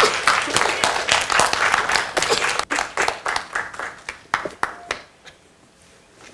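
Audience applauding at the end of a talk, many hands clapping together, thinning out to a few scattered claps and stopping about five seconds in.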